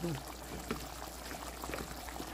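Thick chickpea-flour fish stew simmering in a nonstick pan, a soft steady bubbling made up of many small pops.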